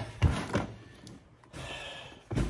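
Items being handled in a clear plastic storage tote: a knock just after the start, then a brief rustle near the end as a plush fabric bath mat is lifted out.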